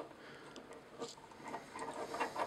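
Faint clicks and light handling noise from a plastic Mastermind Creations Azalea robot figure as its limbs and pegged guns are adjusted by hand: a click about a second in and a few more near the end.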